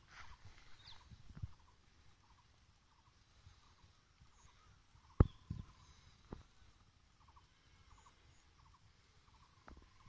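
Quiet open-field ambience with faint, scattered short high ticks. A single sharp click about five seconds in is the loudest thing, with a softer one about a second later.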